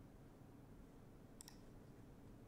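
Near silence, with a quick pair of faint computer-mouse clicks about one and a half seconds in.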